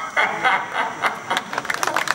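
Theatre audience laughing and clapping, the applause thickening into dense clapping from about a second and a half in.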